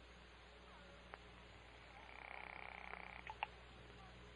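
Faint telephone sound effect: a click about a second in, then a single rapid trilling ring lasting a little over a second, ending in two sharp clicks as the call is picked up.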